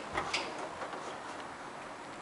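Two short, light clicks in the first half second, then faint room tone.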